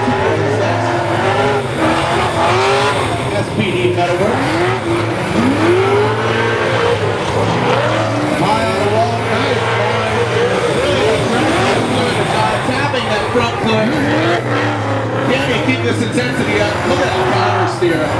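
Nissan Silvia S13 drift car drifting: the engine revs rise and fall continuously and the tyres squeal as the car slides, with a trackside announcer's voice over it.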